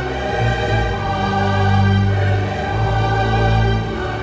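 Orchestral soundtrack music: strings and horns hold a slow, sustained chord over a deep bass line, with choir voices. The bass notes change about a second in and again near three seconds.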